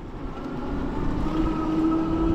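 Ariel Rider Grizzly e-bike's electric hub motor whining steadily and growing louder as the bike picks up speed, over a low rumble of wind and tyres on wet pavement.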